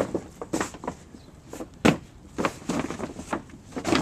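A reinforced polyethylene pond liner (BTL PPL-24) crinkling and rustling in irregular bursts as it is pushed and smoothed down by hand, with one sharper rustle about two seconds in.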